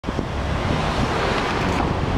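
Wind buffeting the microphone: an even rushing noise with a heavy low rumble.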